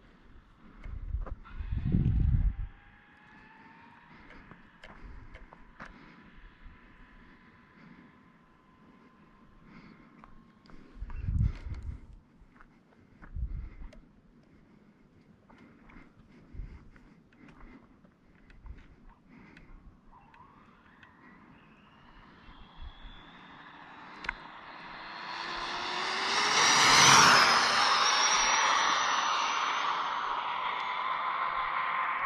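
Brushless electric motor and drivetrain of an Arrma Limitless RC speed-run car whining. Faint at first, with two low thumps, then rising steeply in pitch and loudness under full throttle, with a rush of wind noise, loudest a few seconds before the end.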